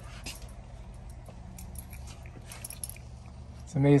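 Faint scattered clicks and handling noise from gloved hands working at a white plastic condensate drain fitting, over a steady low hum. A man's voice comes in just before the end.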